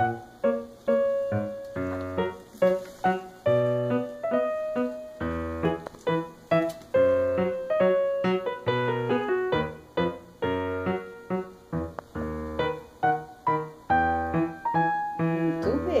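Piano music playing a lively tune of quick, separately struck notes over a recurring low bass note.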